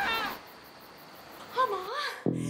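A wordless, gliding vocal cry fading away at the start, a short quiet stretch, then a woman's wordless yell rising near the end.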